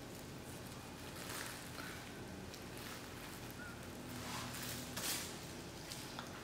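Faint, soft brushing of a basting brush spreading an olive-oil mixture over raw chicken skin, in a few light strokes.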